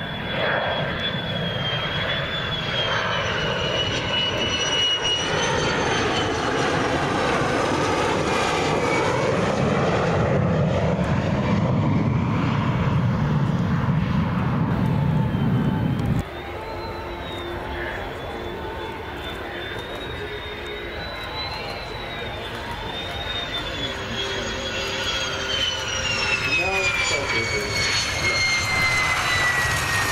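Turkish Air Force F-16 jet on landing approach with its gear down: a steady jet roar with a high whine above it, louder in the first half and cutting suddenly to a quieter approach about halfway through. Over the last few seconds the whine falls steadily in pitch as the jet reaches the runway and touches down.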